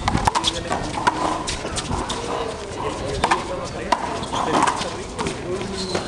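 Big rubber handball being hit by hand and bouncing off concrete walls and floor during a rally: irregular sharp smacks, several close together, each with a short ring, over voices in the background.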